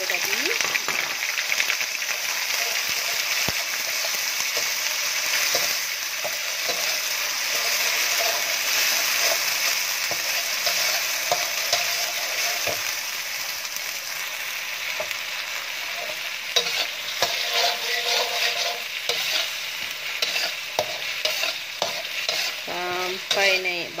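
Blended shallot, garlic and ginger paste sizzling steadily in hot oil in a metal wok with whole spices, while it is stirred with a slotted metal spatula. In the last third, the spatula's scraping and tapping against the wok becomes frequent.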